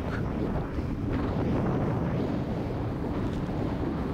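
Steady, low wind rumble on the microphone of a camera riding on a moving motorcycle, with road noise underneath.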